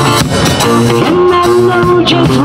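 Live reggae band playing an instrumental passage: electric and acoustic guitars over a drum kit.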